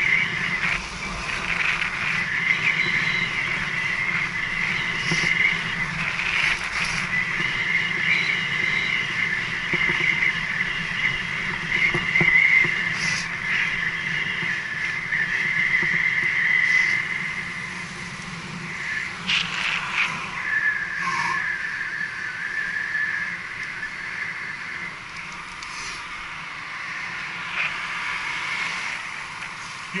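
A bicycle ridden fast on a road, heard from the rider's headcam: steady wind and tyre-on-tarmac rush with a high whine and a few sharp knocks. It grows quieter in the second half as the bike slows.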